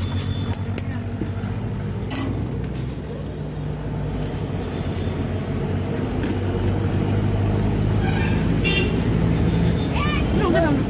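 Steady low hum of road traffic with engines running, growing louder in the second half, with voices in the background. A few sharp scrapes in the first couple of seconds as beetroot is rubbed on a hand grater.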